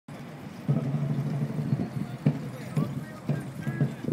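Hoofbeats of a mass of cavalry horses moving on turf, dull thuds coming about every half second, over a low rumble of the troop.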